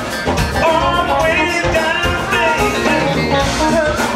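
Live band playing a funky blues-rock groove: a male singer's lead vocal over electric guitar, bass guitar and keyboard, with a steady beat.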